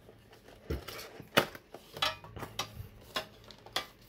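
Clear plastic insert tray of a Pokémon TCG tin being handled and lifted out, giving scattered sharp plastic clicks and light clatter.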